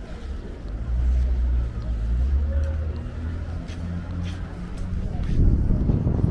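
Street traffic: a heavy vehicle's engine running with a low drone that steps in pitch a few times, then a rougher low rumble that grows louder near the end.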